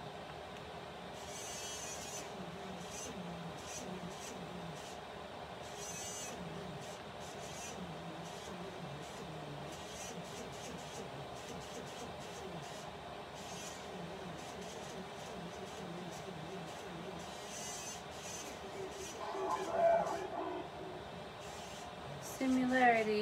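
Spirit box sweeping through radio stations: a steady hiss broken by faint, choppy fragments of voices and short bursts of static, with a louder burst near the end.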